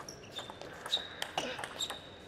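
Table tennis rally: sharp clicks of the ball off rackets and table, about half a dozen in quick, uneven succession.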